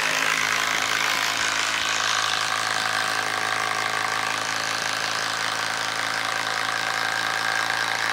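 DeWalt 12V Xtreme compact impact driver hammering steadily without let-up as it drives a long screw down into a wooden log.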